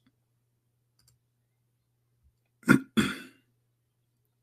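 A man clearing his throat: two short rough bursts close together about two and a half seconds in.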